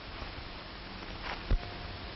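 Steady hiss of an old 1930s film soundtrack, with a single low thump about one and a half seconds in.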